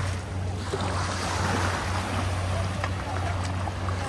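Beach ambience: wind on the microphone and surf from a calm sea, under a steady low hum that drops out briefly a few times.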